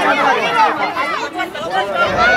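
Many voices shouting and calling over one another: sideline chatter and encouragement during open play in a youth football match.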